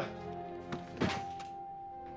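Film soundtrack: quiet, held notes of a sad music score, with a single soft thunk about a second in.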